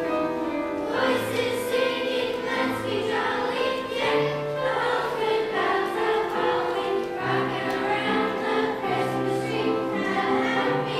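Children's choir singing together in long held notes, with low bass notes from an accompaniment held underneath.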